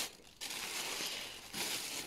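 Thin plastic bag rustling and crinkling as a hand rummages in it and pulls out a folded cloth towel. The rustling starts about half a second in.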